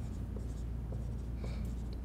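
Dry-erase marker writing on a whiteboard: faint scratching strokes over a steady low room hum.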